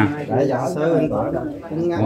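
Conversational speech at a lower volume, with no clear words.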